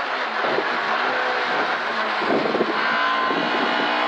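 Ford Escort Mk2 rally car driven flat out, its engine running hard under a steady, loud rush of road and wind noise, heard from inside the cabin.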